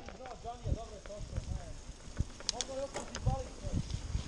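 Mountain bike riding fast over a dirt forest trail: tyre noise with frequent clicks and knocks as the bike rattles over the ground, a few sharper ones about two and a half seconds in. A faint voice is heard in the background.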